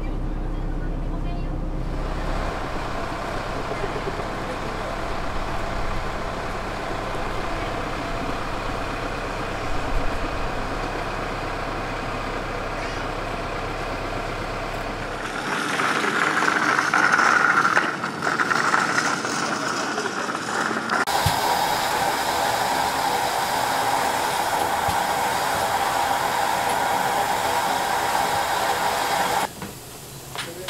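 Bus engine running, heard from inside the cabin as a steady low rumble, which cuts off abruptly about halfway through. From about two-thirds of the way in, a steam locomotive's steady hiss of escaping steam.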